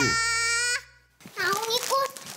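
A voice holding a long, perfectly level "eee" for under a second, then after a short gap a child's voice sliding upward in pitch.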